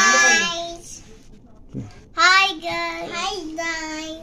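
Young girls' high voices singing: a held sung phrase at the start, a pause of about a second, then another drawn-out sung phrase.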